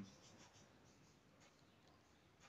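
Near silence: faint background hiss only.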